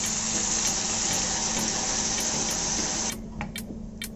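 Water poured from a steel bowl into a hot kadai of spiced potatoes, hissing and sizzling steadily as it hits the pan, then cutting off suddenly about three seconds in.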